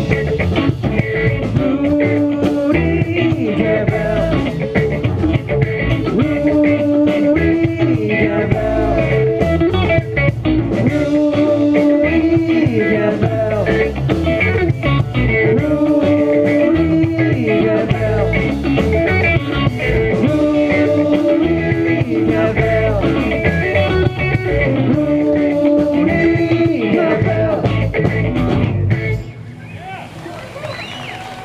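Live rock band playing electric guitars and a drum kit through amplifiers, working through a short repeating riff. The music stops about a second before the end.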